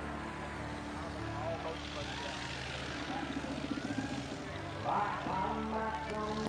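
Propeller airplane engine running steadily, with background voices of people nearby.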